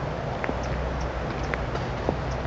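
Steady low outdoor background rumble, with two faint taps about a second apart.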